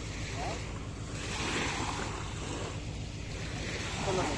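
Small waves breaking and washing up on a sandy shore, swelling louder about a second and a half in, with wind rumbling on the microphone.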